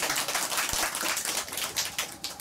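A small group of people applauding, a dense patter of hand claps.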